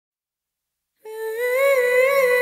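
Background music: silence for about a second, then a voice humming one long, gently wavering note.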